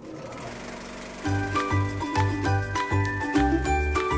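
Film projector running as a sound effect, a mechanical clatter, with a light, tinkling music bed with a steady beat coming in about a second in.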